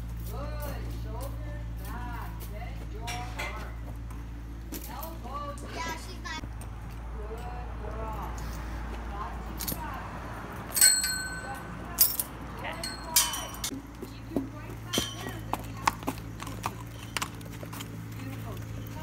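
Metal clinking of cross-tie chains and snap hooks at a horse's halter as it is unclipped: a run of sharp, ringing clinks in the second half, the loudest about eleven seconds in.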